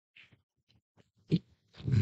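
A person laughing: a short burst a little past halfway, then a longer burst of laughter near the end.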